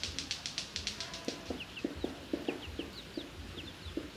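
Chickens clucking with small birds chirping: a quick run of high chirps in the first second, then a string of short clucks mixed with scattered high chirps.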